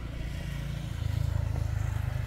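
A motorbike engine running as it passes along a road, its low rumble growing louder about a second in.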